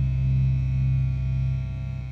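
A low note on a distorted electric guitar held and left ringing at the end of a death metal song, a steady buzzing hum that starts to fade near the end.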